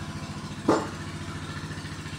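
A small engine idling steadily with an even low throb. A brief sharp sound cuts in once, about two-thirds of a second in.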